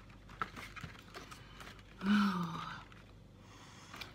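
A woman's short hummed "hmm", falling slightly in pitch, about halfway through. Around it are faint taps and rustles of a cardboard advent calendar being handled.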